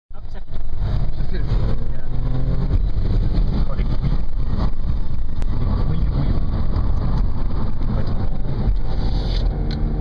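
Audi S4 engine heard from inside the cabin while the car is driven on a track, running loud and steady with its pitch rising and falling under the throttle, over tyre and road noise.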